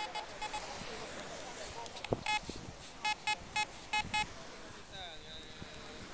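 Fisher F22 metal detector beeping in short, repeated, steady tones, signalling a buried coin. There are a few beeps at the start, two about two seconds in, and a quicker run of about five between three and four seconds.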